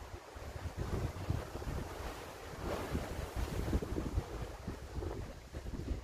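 Wind buffeting the phone's microphone outdoors, an uneven low rumble that rises and falls in gusts.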